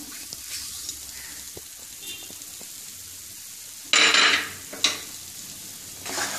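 Moong dal halwa frying in ghee in a nonstick pan: a low, steady sizzle with faint ticks. About four seconds in comes a short loud noise, then a sharper click just under a second later.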